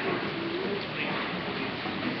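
Steady background babble of children's voices and play, with one short pitched voice sound rising in pitch about half a second in.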